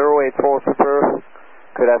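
A pilot's voice over a narrow-band, VHF air-traffic radio channel: the Air France pilot checking in with approach control. A short gap of faint radio hiss comes about halfway through, before the speech picks up again.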